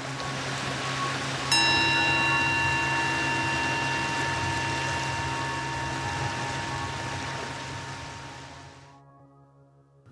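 A single bell stroke about a second and a half in, over a steady hiss. It rings on with several clear overtones and slowly dies away, and the whole sound fades out near the end.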